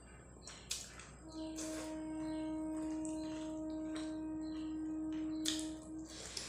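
Wet mouth clicks of someone eating rice and fish curry by hand. Over them, a steady pitched tone from an unseen source starts about a second in and holds for about five seconds.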